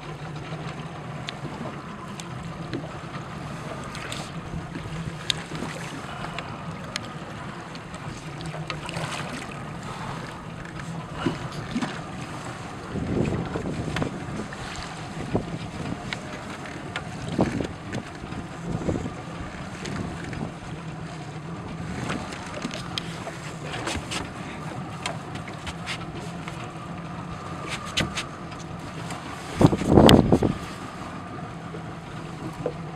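Steady low hum of a small boat's engine running under wind and water noise on an open boat. Scattered clicks and knocks come from the rod and spinning reel while a fish is played on a jigging rod, with a few louder bumps about halfway and at the end.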